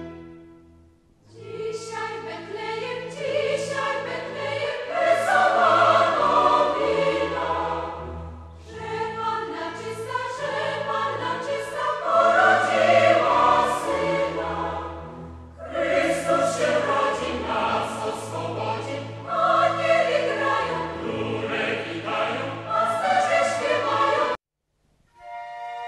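Classical choral music on the soundtrack: a choir singing over sustained low accompaniment. It starts about a second in, after a short fade, and moves in several phrases with brief pauses between them.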